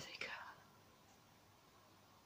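Near silence: room tone, after a faint breathy trail of a woman's voice fading out in the first half second.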